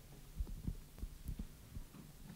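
Soft, irregular low thumps, about five in two seconds, over a faint steady hum: a handheld microphone being carried across the room, picking up handling bumps and footsteps.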